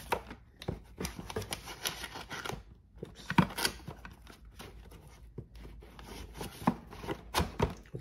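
Paper, cardboard and plastic board-game pieces handled and set into their box: rustling and sliding over the first couple of seconds, then scattered sharp taps and clicks, the loudest about three and a half seconds in and a few more near the end.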